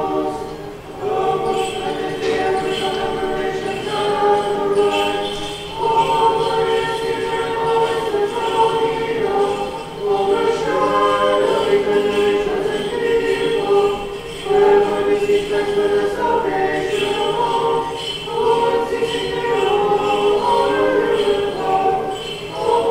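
Church choir singing Orthodox liturgical chant a cappella, several voices in harmony. The chant moves in phrases of a few seconds, with brief breaks between them.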